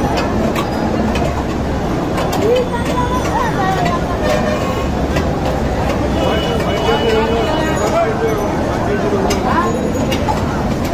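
Busy outdoor market background: a steady rumble of road traffic with distant voices talking. Faint clicks and scrapes come from fish scales being scraped against a fixed curved bonti blade.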